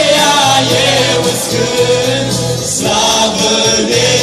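A group of men singing a worship hymn together into handheld microphones, their voices amplified through the hall's loudspeakers, over steady low accompaniment notes.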